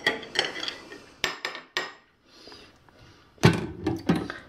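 A spoon and dishes clinking in a stainless steel kitchen sink: several sharp knocks with short ringing, the loudest near the end.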